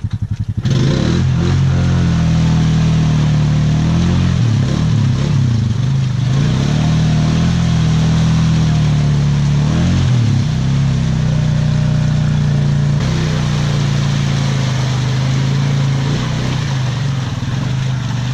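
ATV engine revving hard under load as the quad churns through a deep mud hole, bogged down, its pitch rising and falling with the throttle. The throttle opens sharply about a second in and stays on.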